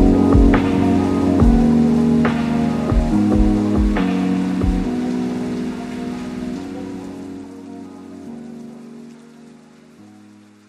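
Vocals-only nasheed music fading out: sustained layered voices change chord every second or so, with about one sharp percussive hit a second from voice or hands that stops about halfway through. A steady rain-like hiss lies beneath, and everything fades away toward the end.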